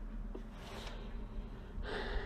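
A man breathing in close to the microphone between sentences, once about half a second in and again near the end, over a faint steady low hum.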